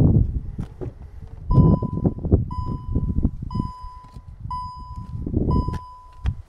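Škoda Karoq's in-cabin warning chime sounding five times, about once a second, each a steady high tone, starting about a second and a half in. Low rumbling and knocks run underneath.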